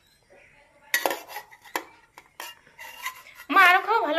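A metal spoon clinking and scraping against a small metal pot as a toddler eats, in several sharp clinks. Near the end, a short wavering vocal sound from a person.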